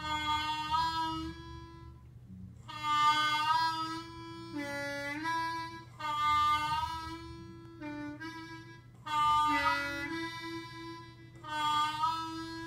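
Diatonic blues harmonica playing a series of short held notes with pauses between them, drawing on the number two hole and bending the notes down in pitch.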